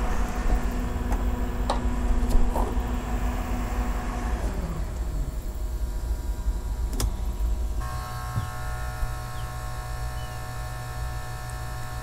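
Electric motor of a powered engine-hatch lift whining steadily as the cockpit floor hatch is raised over the engine compartment, its pitch sliding down about four and a half seconds in. A sharp click comes near seven seconds, then a steady, lower hum.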